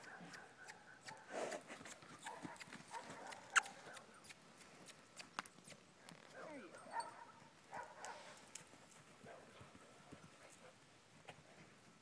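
Hoofbeats of a young Quarter Horse colt, an irregular series of clip-clops, with one sharper, louder knock about three and a half seconds in.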